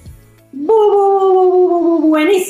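The tail of the intro music fades out, and about half a second in a woman's voice holds one long drawn-out call that slides slightly down in pitch.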